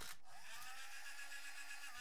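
Faint, steady whir of a small electric motor on model-railroad machinery, with a slight rise in pitch near the start.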